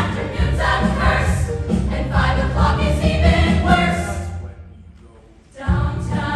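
A large ensemble chorus sings a musical-theatre number with instrumental accompaniment. Shortly after four seconds in, the music and voices fade away for about a second, then the full chorus and band come back in together just before the end.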